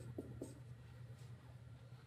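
Dry-erase marker writing on a whiteboard: three short, faint strokes in the first half second, then only a steady low hum in the room.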